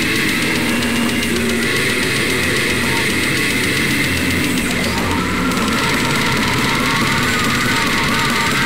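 Slamming brutal death metal recording: heavily distorted guitars and drums playing as a loud, dense, unbroken wall of sound.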